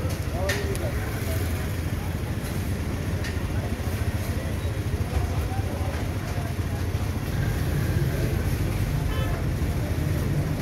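Busy street ambience: a steady rumble of road traffic with indistinct voices of a crowd, and a couple of sharp clicks.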